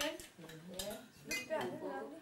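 Cutlery clinking against plates and serving dishes at a shared meal: a few separate light clinks, over low table conversation.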